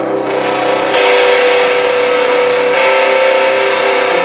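Live rock band playing: electric guitars hold ringing notes over a drum kit, with the cymbals coming in right at the start.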